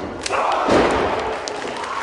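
Wrestlers' bodies hitting the ring canvas: a sharp impact about a quarter second in, then a heavy thud a little under a second in, over shouting in the hall.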